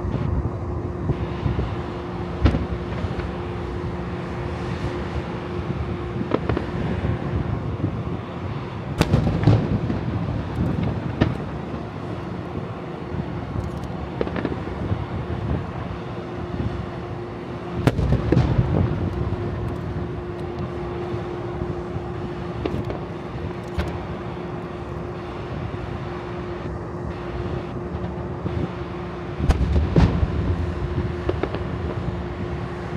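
Star mine firework barrage by Nomura Fireworks: aerial shells bursting one after another in quick succession, with two heavier clusters of booms, about a third and about two thirds of the way through. A steady low hum runs underneath.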